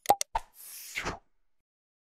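Sound effects for an animated subscribe button: three quick mouse clicks, then a swoosh that falls in pitch and ends just over a second in.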